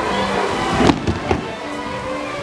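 Live folk dance music with held notes, broken about a second in by a sharp knock, the loudest sound, followed by two fainter knocks.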